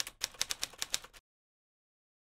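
Typewriter key-strike sound effect: a quick run of about a dozen sharp clacks over a little more than a second, then it stops.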